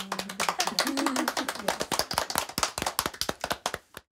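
Hands clapping in quick, uneven claps, as more than one person applauds, stopping suddenly just before the end.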